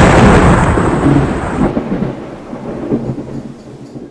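A loud boom sound effect dying away in a long, deep rumble that fades steadily over a few seconds, with a thin high whine that stops after about a second and a half.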